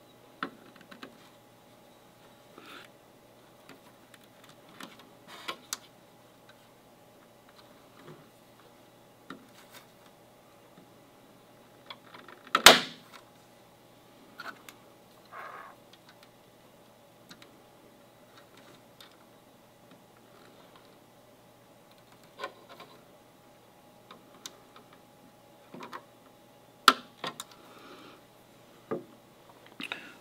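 Scattered small clicks and taps as tiny u.fl coaxial connectors are pressed onto the sockets of a router circuit board by hand and with a screwdriver tip. There is one sharp click near the middle and another near the end, over a faint steady room hum.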